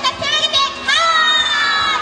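Children in an audience shouting together, ending in one long, loud drawn-out shout that starts about halfway through.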